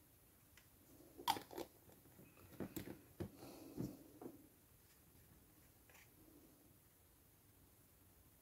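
A short run of small clicks and taps as a plastic scale-model kit and the screw cap of a small glass glue bottle are handled, bunched between about one and four seconds in, with quiet room tone around them.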